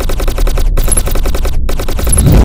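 Rapid machine-gun fire, a sound effect of about a dozen shots a second over a low rumble, broken by two short pauses.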